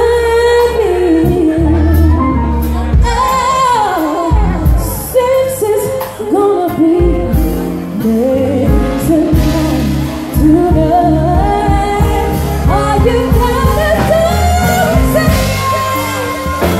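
A woman singing into a microphone over musical accompaniment with a steady bass line, her voice gliding and sliding between notes.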